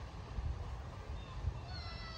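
Low, uneven rumble of wind and handling noise on the phone's microphone. Near the end, a high, slightly falling whine begins.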